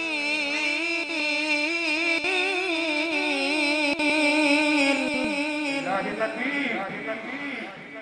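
A man's voice reciting the Quran in melodic tilawat, amplified through a microphone, holding one long wavering note for about six seconds. It then breaks into shorter, fainter phrases as the level drops.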